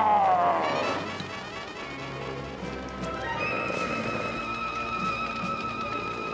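The Hulk's roar falling away over the first second, the loudest moment. Dramatic orchestral TV score follows, with a high, wavering held string note from about halfway.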